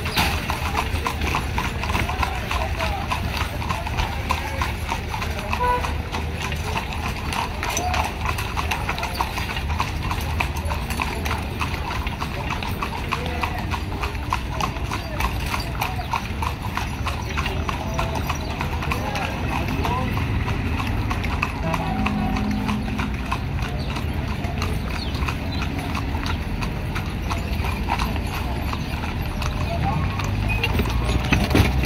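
Hooves of carriage horses clip-clopping steadily on a paved road, the horse pulling the carriage and others around it, as the carriages move along.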